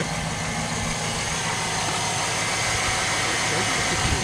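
Vehicle engine running steadily, with the alternator and belt drive turning, heard close up under the open hood.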